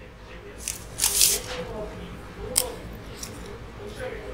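Disposable wooden chopsticks handled close to a chest-worn lapel microphone: a brief loud rustle about a second in, then a sharp snap about two and a half seconds in as the pair is split apart.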